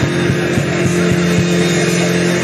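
A congregation praying aloud all at once, a dense mass of overlapping voices, over one low keyboard note held steady.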